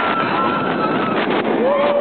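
Roller coaster in motion, heard from a front seat: steady rush of wind and track noise, with riders' voices over it. There is a long, high, held scream through the first second or so, and a shorter, lower yell near the end.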